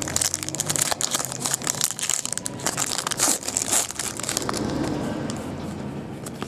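Foil trading-card pack being torn open and crinkled: dense crackling and rustling of thin foil wrapper, busiest for the first four seconds, then a softer rustle.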